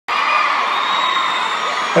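Large arena crowd cheering, a dense, steady wash of voices with high-pitched screams held over it.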